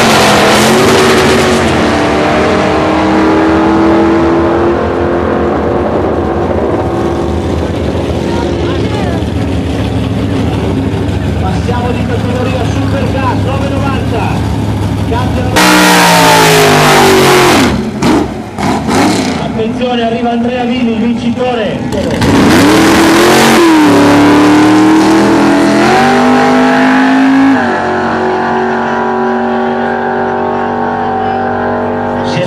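Drag cars, among them a Chevrolet Nova, launching at full throttle; their engine note holds and then slowly falls away as they run down the strip. About halfway through, a white muscle car's engine comes in very loud at high revs with tyre noise in a burnout, drops to a few sweeping throttle blips, then runs loud again in a long full-throttle pass that eases off near the end.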